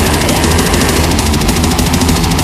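Loud, dense extreme-metal music: heavily distorted guitars and bass under a rapid, even drum pattern.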